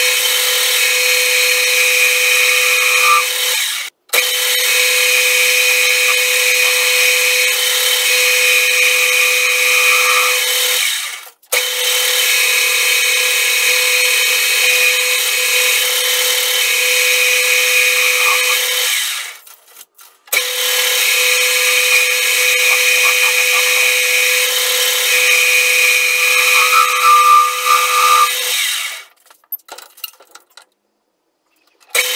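Metal lathe running under cut as a hand-swung ball-turning radius tool shapes a rounded end on a bar, with a steady whine and cutting noise. The sound cuts off abruptly three times and dies away near the end as the spindle stops.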